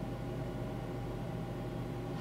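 Steady low hum with a faint hiss: background noise of a home recording setup, with nothing else happening.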